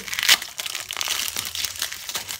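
Dry, papery outer skin of an onion crackling and tearing as it is peeled off by hand, in irregular crinkles with the sharpest crackle about a third of a second in.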